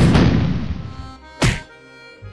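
Dubbed-in gunshot sound effects: the loud blast of one shot dying away, then a single sharp shot about one and a half seconds in. Music with held notes comes in faintly underneath.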